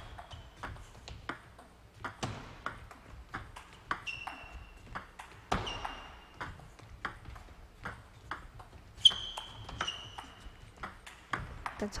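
Table tennis ball clicking off the players' rubber-faced bats and the table in a rally, a sharp hit every third to half a second. Several short high squeaks cut in among the hits, the loudest about nine seconds in.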